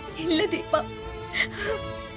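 A woman crying, her voice whimpering and breaking with catching breaths, over a sustained background music score.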